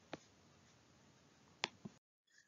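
Near silence with a few faint, short clicks: one just after the start and two close together near the end.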